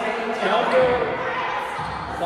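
Players' voices calling out in an echoing gymnasium, with two low thuds of a volleyball striking the floor or a hand, about a second and a half apart.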